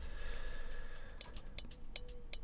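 A programmed hi-hat and cymbal pattern, a quick even run of high ticks, playing through a delay plugin. The echoes bounce between left and right, and each repeat comes back a little duller than the one before.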